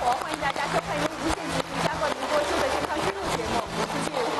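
A woman speaking Mandarin: a television host's opening greeting to the audience.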